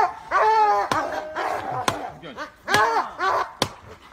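Dogs barking repeatedly in short runs of pitched barks, with a few sharp clicks in between.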